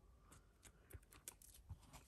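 Near silence, with a few faint, short ticks of trading cards and a plastic card sleeve being handled.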